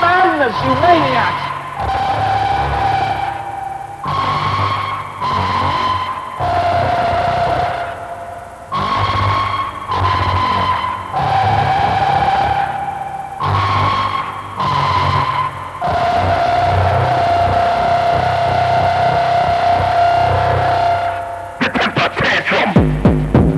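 Electronic rave music played over a big sound system: a synthesizer melody of long held notes, each lasting about two seconds, over a low bass, with short dips between phrases. Fuller, denser music comes back right at the end.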